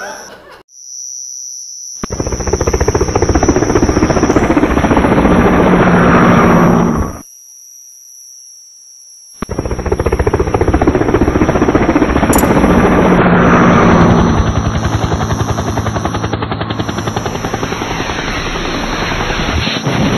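Stovetop moka pot on a gas burner, hissing and gurgling loudly as the coffee spurts up into the upper chamber. It comes in two long stretches split by a short, much quieter gap a little after halfway.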